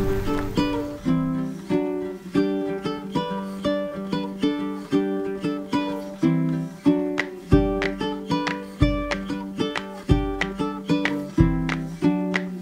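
Background music: a plucked-string instrumental tune of short picked notes at an even pace, with a deep bass note coming in about seven and a half seconds in and repeating on the beat.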